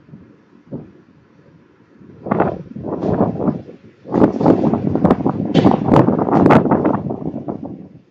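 Wind buffeting the microphone in irregular gusts: faint at first, then loud from about two seconds in until just before the end.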